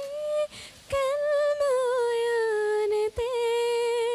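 A woman singing unaccompanied, drawing out long held notes without clear words, the pitch wavering slightly on each note. The voice breaks off briefly about half a second in and again about three seconds in.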